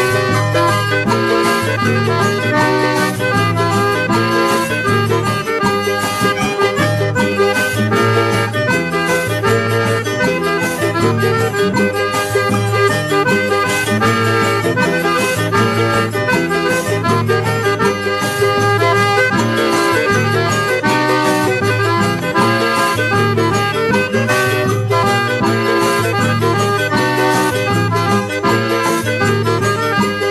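Piano accordion playing a xote, a northeastern Brazilian dance tune, as an instrumental over a steady bass and percussion beat.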